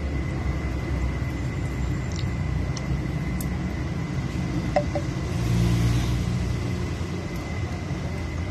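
Steady low background rumble of a running machine or traffic, swelling for about a second past the middle, with a thin steady high tone and a few faint clicks.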